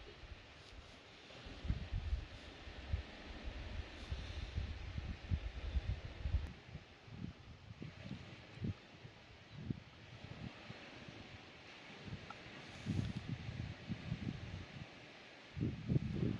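Wind buffeting the microphone outdoors: a low, uneven rumble that comes and goes in gusts, heaviest in the first half and again near the end.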